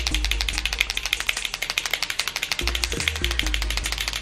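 White Posca paint marker being shaken, its mixing ball rattling inside in rapid, regular clicks, to mix the paint before use. Background music with a bass line plays underneath.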